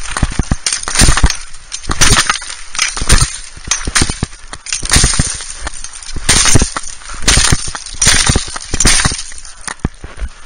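Fiskars 23 cm brush axe chopping through brush stems: sharp blade strikes with cracking wood, about once a second, some coming in quick pairs.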